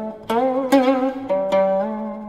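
Guqin (seven-string Chinese zither) solo: about four plucked notes in quick succession, the middle ones wavering in pitch, with the last note left to ring and fade near the end.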